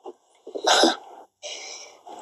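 A person's sharp, sneeze-like burst of breath about half a second in, followed by a quieter, longer hissing breath.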